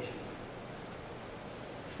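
Steady, faint background hiss of room tone in a hall, with the tail of a man's voice fading out at the very start.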